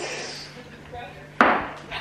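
A single sharp knock about one and a half seconds in, dying away quickly, over a steady low hum.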